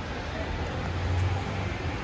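A steady low hum under an even background hiss, with no distinct events.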